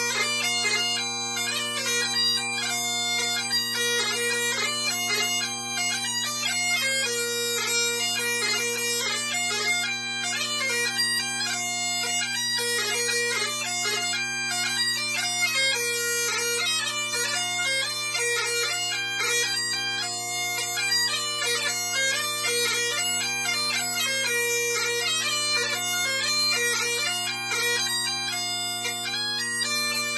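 Bagpipes playing a quick tune on the chanter over steady, unbroken drones.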